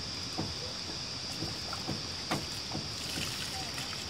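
Water running steadily out of the end of a black plastic water pipe onto muddy ground, with a few faint ticks and a steady high-pitched tone underneath.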